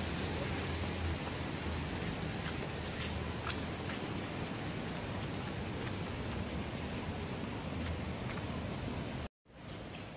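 Steady rain on a wet city street: an even hiss with a low traffic hum beneath and a few faint ticks. The sound cuts out abruptly for a moment near the end.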